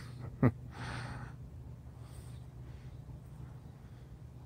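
A man's short sharp vocal sound, then a brief breathy exhale, over a low steady hum.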